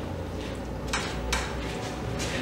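Footsteps on a hard corridor floor, two sharp steps about a second in, over a low steady hum.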